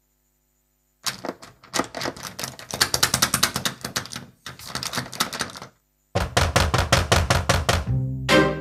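Silence at first, then a rapid, irregular clatter of sharp knocks and taps for several seconds. After a brief break comes a quicker, evenly spaced run of sharp knocks, about five a second, over a low steady tone.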